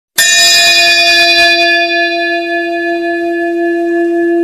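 A single long, steady horn-like note from a blown wind instrument that starts abruptly, bright at first and mellowing after about two seconds as it holds one pitch.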